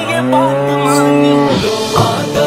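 A cow mooing once: a single long, low call of about a second and a half, over background music.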